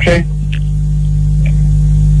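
Steady electrical mains hum on the recording, a loud low buzz with many evenly spaced overtones, heard plainly in a gap between words.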